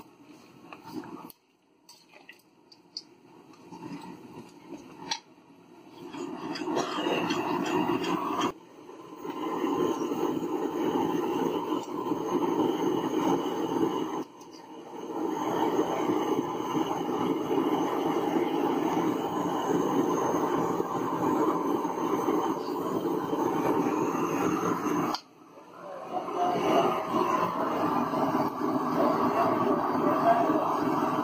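Mutton cooking in a steel kadai: a loud, steady, noisy hiss of the pan over its fire, cut off abruptly three times. In the quieter first few seconds a metal ladle scrapes and clinks against the pan.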